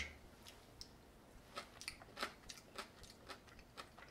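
Faint, irregular wet mouth clicks of a person chewing a piece of kumquat, about ten small clicks over the few seconds.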